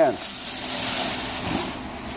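Weighted pull sled scraping along a concrete gym floor as it is dragged by rope: a steady hiss that swells about a second in and then fades.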